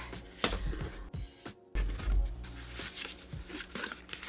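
Small cardboard product boxes being handled and lifted out of a corrugated shipping box: a string of short scrapes, rustles and taps. The sound drops out briefly a little over a second in, then comes back with a low thud.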